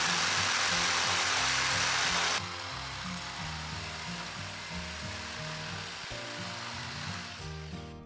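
A Black+Decker electric jigsaw cutting across a pallet-wood board. It is loud at first, then drops suddenly to a quieter run about two and a half seconds in, which carries on until near the end. Background music plays throughout.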